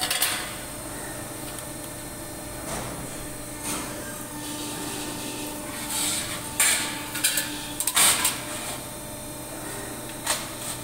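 Press brake running with a steady hum while a sheet-metal part is slid and knocked against its dies and back gauge. There is a sharp metallic clatter just after the start and a cluster of them from about six to eight seconds in.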